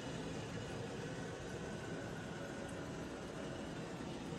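HOROW T0338W one-piece toilet refilling after a flush: water running steadily through the tank's fill valve.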